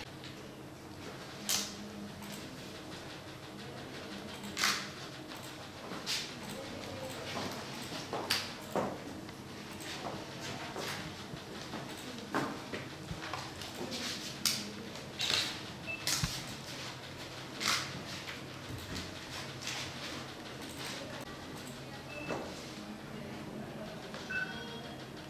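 Irregular short, sharp clicks, about one every second or two, over quiet room tone.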